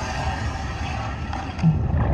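Steady low rumble and hiss of water heard through an underwater camera.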